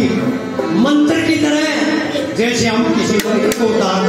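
Haryanvi ragni music: harmonium playing with dholak drum strokes, and a man's voice singing over them.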